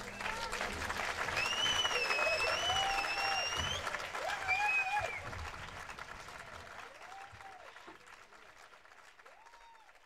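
Audience applauding and cheering after a live jazz number, with a high wavering whistle about a second and a half in and a few shouts; the applause dies away toward the end.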